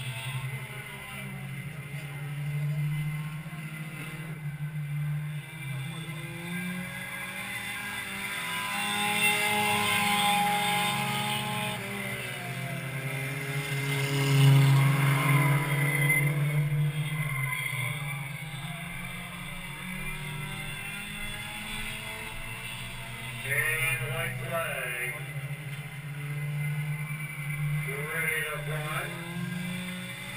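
Stock car engines running laps around a short oval track, a steady low drone that swells and falls as the cars come around, loudest about halfway through.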